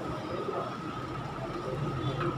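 Steady background room noise with a constant faint high whine and a low hum, unchanging throughout.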